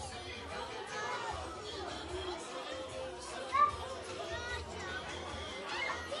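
Indistinct chatter of many voices, with no single speaker clear, and one brief louder voice about three and a half seconds in.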